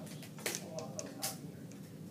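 A handful of light clicks and taps as a wooden meter stick and a marker are handled against a whiteboard.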